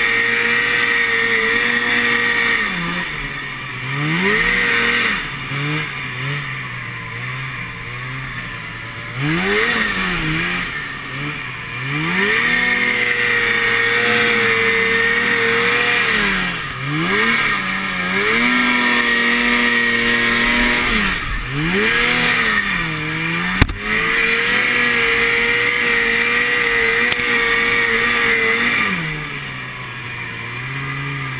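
Two-stroke snow machine engine being ridden hard through deep snow: it holds high revs for a few seconds at a time, then drops off and climbs back up repeatedly as the throttle is worked. A single sharp knock about three-quarters of the way through.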